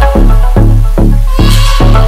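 Instrumental background music with a deep bass and a steady pulse of notes, about three a second.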